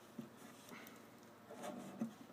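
Faint handling noise from an acoustic guitar being turned in the hands: a light knock about a fifth of a second in, then soft rubbing and brushing against the body that grows a little louder near the end.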